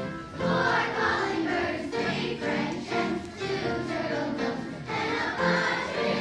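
Children's choir singing a song with instrumental accompaniment.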